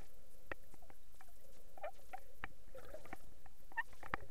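Underwater reef sound: irregular sharp clicks and pops, several a second, over faint low water noise, picked up by a camera submerged over coral.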